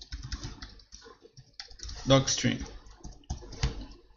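Typing on a computer keyboard: quick, uneven key clicks.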